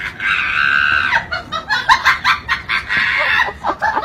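A domestic cat yowling in two long, drawn-out calls, the first about a second in length starting just after the beginning, the second in the latter half. Short choppy sounds come between and after the calls.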